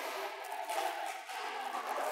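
Steady, even room noise with no distinct impacts, shuttle hits or voices.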